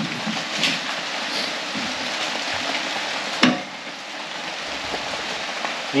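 Steady rain heard from inside a garage, an even hiss throughout, with one sharp knock about three and a half seconds in.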